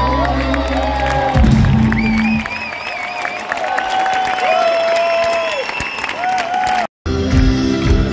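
A live rock band's song ends about a second and a half in. Then a concert crowd cheers and shouts, with high wavering calls. A sudden cut near the end drops straight into the band playing the next song.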